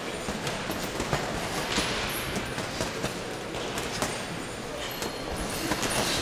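Irregular slaps and thuds of boxing gloves and quick footwork over the hubbub of a busy boxing gym, with voices in the background.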